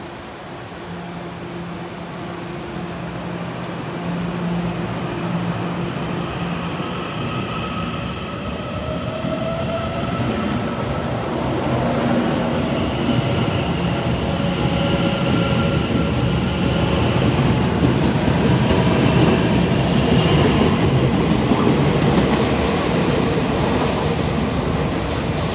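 TRA TEMU2000 Puyuma Express electric train pulling out of an underground station platform. A low steady hum gives way, about eight seconds in, to motor whine rising in pitch as it accelerates. The sound grows louder as the cars run past with wheel clatter.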